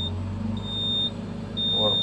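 Excavator cab monitor's warning buzzer sounding a steady high beep about once a second, each beep about half a second long, over the low hum of the running engine.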